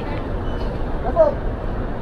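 Steady outdoor background noise with a low rumble, and a short, falling voice-like sound a little after a second in.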